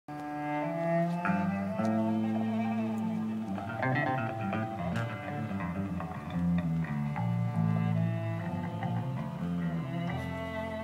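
Live experimental jam of bowed cello with bass, playing long held notes that shift in pitch, with a flurry of quicker notes around the middle.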